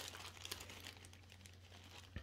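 Near silence: a faint steady low hum, with a few soft crinkles of plastic parts bags in the first half second.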